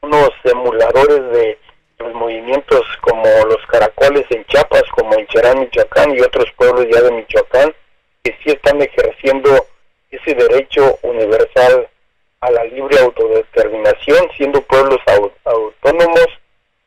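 A person speaking in continuous phrases over a telephone line, the voice thin and phone-quality.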